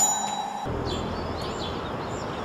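A bright chime rings and fades at the start. From under a second in, outdoor ambience takes over: a steady low rumble with birds chirping.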